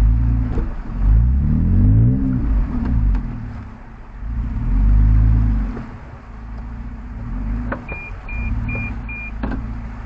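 Off-road vehicle's engine revving up and down as it crawls over rocks with front and rear lockers engaged, with two strong surges in the first half. Near the end, four short high beeps come in quick succession.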